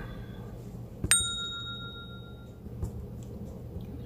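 A single bell ding: a sharp strike about a second in, ringing out with a few clear tones that fade over about a second and a half.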